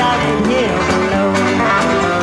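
Live bluegrass-style country band music led by a plucked banjo, with the band playing along.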